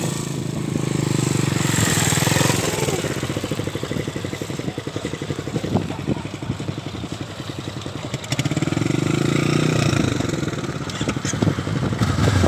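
Motorcycle engine running at low speed with a steady pulsing beat, picking up for the first few seconds and again about eight and a half seconds in.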